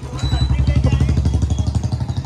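Small single-cylinder motorcycle engine running close by, its exhaust putting out a rapid, even beat that gets louder about a quarter second in.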